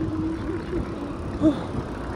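Wind rumble on the microphone and road traffic, heard from a road bike riding along a busy main road.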